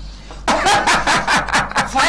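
People laughing in quick repeated bursts, starting about half a second in, over a steady low electrical hum.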